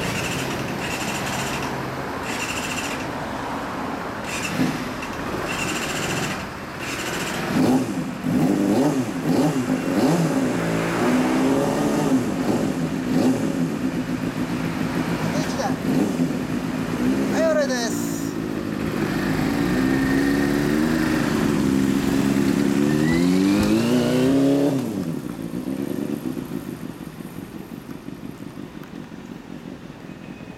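Motorcycle engines running and being revved, the pitch rising and falling repeatedly, then pulling away and dropping off sharply about 25 seconds in, leaving quieter street sound.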